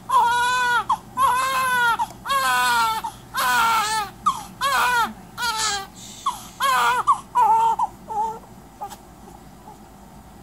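Newborn baby crying in a run of wails about a second each, one after another, growing shorter and weaker until they stop about eight seconds in.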